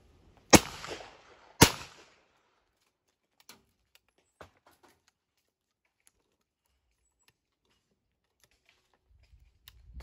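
Two shots from a W. Thorn 12-bore double-barrelled hammer gun, both barrels fired about a second apart, each ringing out briefly. Then a few faint clicks as the gun is opened and reloaded.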